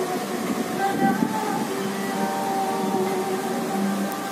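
Background music of long held notes over a steady hiss.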